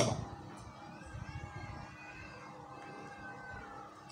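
A pause in the speaking, filled with faint outdoor background. A faint drawn-out sound with a gently wavering pitch runs for a couple of seconds in the middle.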